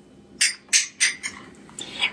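Four sharp clinks and knocks from a glass jar of tallow and a spoon being handled, about a third of a second apart, followed by a few fainter ticks. The tallow is cold from the refrigerator and hard.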